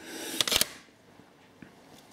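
Brief handling noise from plastic CD jewel cases: a rustle that builds over the first half second and ends in two sharp plastic clicks, then quiet.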